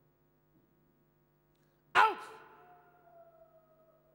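A man's sudden loud shout of "Out!" through a microphone and hall PA, followed by a tone that rings on and fades over about two seconds. A steady low electrical hum from the sound system lies underneath.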